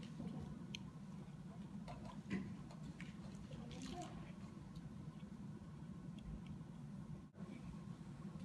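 Quiet room tone with a steady low hum and a few faint scattered clicks and rustles; no music is played. The sound cuts out for an instant near the end.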